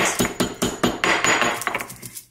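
Stone pestle pounding in a stone mortar, a quick run of repeated knocks, cracking open cardamom pods.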